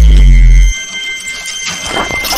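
A deep bass boom from an animated intro's sound design, very loud and cutting off suddenly well under a second in, with a thin high ringing tone held under it.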